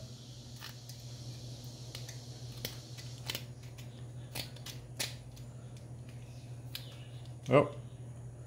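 Pocket-knife blade scraping and picking at a painted steel pipe plug: scattered light scratches and ticks as the paint is cut away to uncover the plug's blocked vent hole, over a steady low hum.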